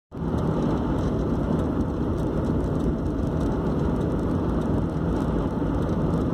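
Steady road and engine noise heard inside a car's cabin while driving at motorway speed, a continuous low rumble.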